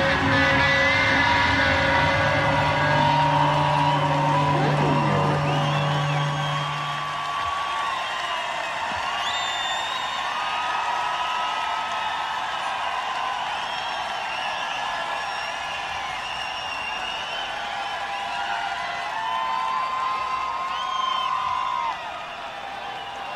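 The last held chord of a live rock band's song rings out and fades away over the first several seconds. A large concert crowd cheers, whoops and whistles throughout, and carries on alone after the music dies.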